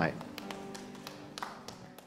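Faint, sustained music chords slowly fading, with about half a dozen sharp taps spread through it.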